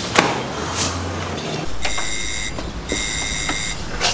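Electric doorbell buzzer pressed twice: two steady buzzes of under a second each with a short pause between, somebody ringing at a front door. A brief thump near the start.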